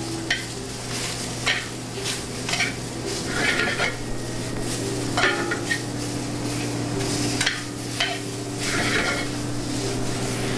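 Spinach wilting in clarified butter in a sauté pan, sizzling as it is tossed with metal tongs: repeated clicks and scrapes of the tongs against the pan, over a steady low hum.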